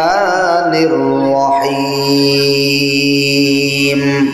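A man chanting Quranic recitation in Arabic in a melodic style: a wavering, ornamented phrase in the first second, then one long held note from about halfway through that stops right at the end.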